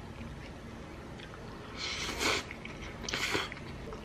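Close-miked eating sounds: a mouthful of shrimp and tomato linguine being chewed, with small clicks and two short noisy bursts about two and three seconds in.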